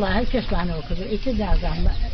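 A woman speaking Kurdish in conversational talk, with a steady low rumble of background noise beneath her voice.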